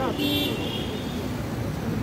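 City road traffic noise from passing cars, with a brief high-pitched toot shortly after the start.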